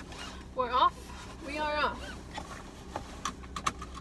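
A woman's voice making two short wordless sounds in the first two seconds, over a low steady hum, then a run of sharp clicks and taps near the end.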